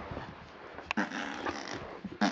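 A dog growling, with a short rough burst of growl a second in.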